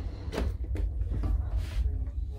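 A wooden cabin desk drawer sliding shut, then the cabinet door beneath it being pulled open, giving a few short knocks and clicks. A steady low hum runs underneath.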